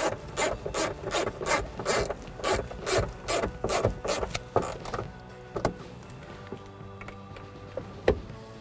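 Hand ratchet on an 8 mm socket and extension clicking in quick back-and-forth strokes, about three a second, snugging bolts into a plastic overhead console. It stops about five seconds in.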